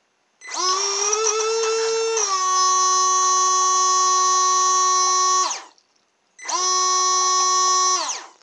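Small 3–6 V DC water pump on a model jet boat running with a steady whine, which has a scouring-pad filter glued over its inlet. It runs twice: a long run whose pitch drops slightly about two seconds in, then a shorter run after a brief stop.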